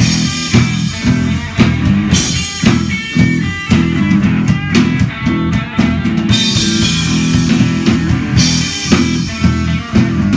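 Live rock band playing an instrumental passage between sung verses: electric guitar over a steady drum-kit beat, with no singing.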